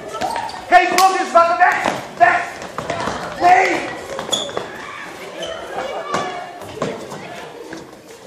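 Several children's high voices calling out and shrieking, loudest in the first few seconds and then dying down, with scattered thumps and knocks as they move about and drop onto the floor.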